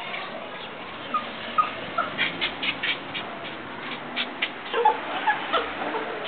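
West Highland White Terrier whimpering in short high squeaks, with a quick run of sharp ticks in the middle.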